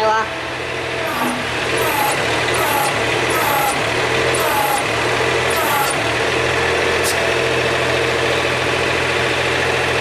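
Old excavator's diesel engine idling steadily. Over it, during the first six seconds, a run of short high chirps comes about once a second.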